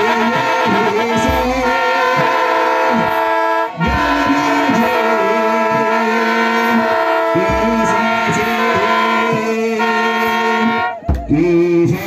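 A group of Ethiopian Orthodox clergy chanting a hymn (wereb) together, with kebero drum beats underneath. The sound breaks off briefly about four seconds in and again near the end.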